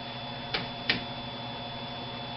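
Chalk striking a chalkboard twice as a letter is written, two short sharp clicks about a third of a second apart, over a steady electrical hum.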